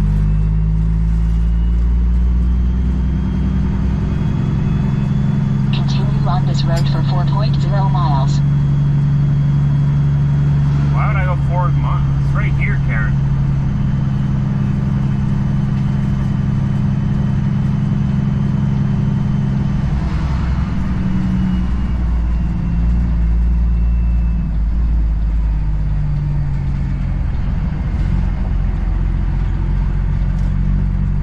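Semi truck's diesel engine running at low road speed, heard from inside the cab: a steady low drone whose pitch shifts about two-thirds of the way through as the truck turns in and slows. Two short bursts of higher, voice-like sound break in about a fifth and two-fifths of the way in.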